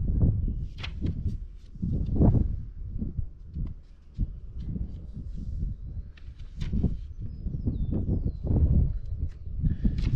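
Wind buffeting the microphone in repeated gusts, with the paper pages of old logbooks rustling and flicking as they are turned by hand.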